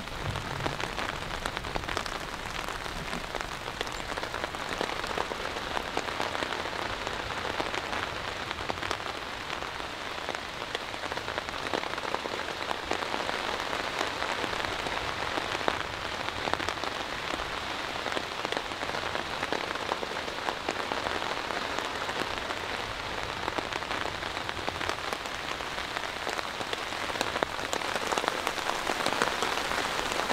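Steady rain falling, with many individual drops ticking sharply over the even hiss of the downpour.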